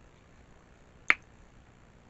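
A single sharp mouth click, a lip smack while chewing, about a second in, against faint room tone.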